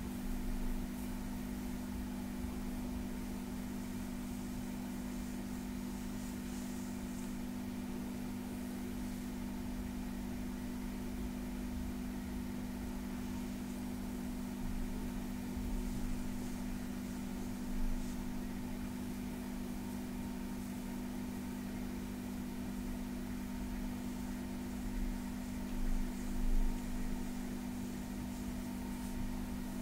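Hands massaging and scratching a bare back, with faint brushing of fingertips and nails on skin, under a steady low hum that is the loudest thing heard. There are a few soft bumps, one about two-thirds of the way through and a cluster near the end.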